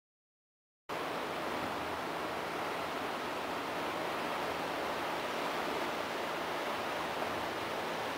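Silence, then about a second in a steady, even rushing noise begins and holds without change: outdoor ambience with no single source standing out.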